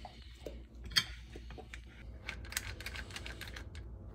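Metal ice cream scoop working vanilla ice cream out of a tub and onto a ceramic plate: one sharp click about a second in, then a quick run of small clicks and scrapes in the second half.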